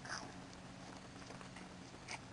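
A short high-pitched vocal cry, like a squeal, right at the start, then only a faint steady low hum.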